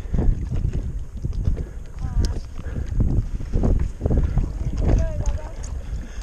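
Wind buffeting an action-camera microphone as an uneven, gusting rumble, with water washing around the rider at the surface.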